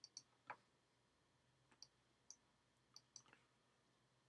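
Faint, scattered clicks of a computer mouse and keyboard, about eight of them, short and irregularly spaced, over near silence.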